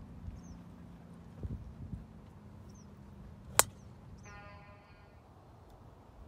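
A golf driver striking a teed ball: one sharp crack, by far the loudest sound, about three and a half seconds in. A short held tone with many overtones follows for about a second, and small birds chirp faintly now and then.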